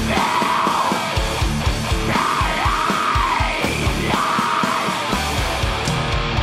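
Atmospheric black metal: distorted guitars and pounding drums under harsh, yelled vocals that come in drawn-out phrases.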